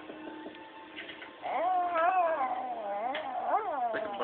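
A cat's long, wavering yowl begins about a second and a half in, rising and falling in pitch with sharp upward swoops near the end. It is the cry of an angry cat that is being provoked.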